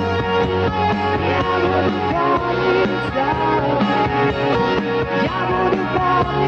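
A rock band playing an instrumental passage: a lead electric guitar plays a melody with bending notes over bass and drums. The bass moves to a new note about two seconds in.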